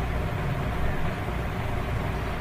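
Steady background noise: a low rumbling hum with an even hiss over it, unchanging throughout.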